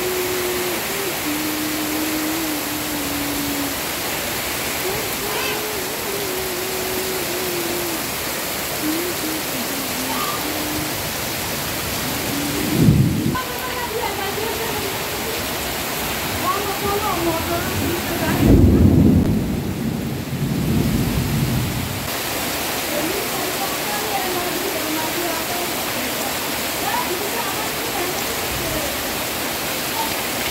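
Heavy rain pouring steadily onto a yard, leaves and roofs. Two low rolls of thunder come through it: a short one a little before the middle and a longer, louder one just after the middle.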